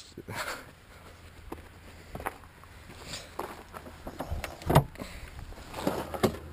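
Quiet handling sounds and a few small clicks, with one sharp knock about three-quarters through as the car's hood is opened, over a faint steady low rumble.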